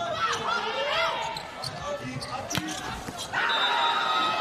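Indoor volleyball rally: the ball is struck sharply a few times amid short squeaks of court shoes and crowd voices echoing in a large hall. About three seconds in, a steady sustained tone sets in over the crowd as the point ends.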